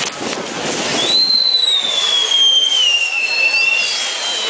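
Castillo fireworks: spark fountains and spinning wheels hissing and crackling. About a second in, a high whistle starts and falls slowly in pitch for nearly three seconds, with a second, fainter whistle near the end.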